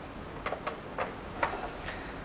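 About five light, sharp clicks at uneven spacing, a third to half a second apart, from an old Philips radio cassette recorder's plastic case and controls as it is handled and lifted off a wooden shelf.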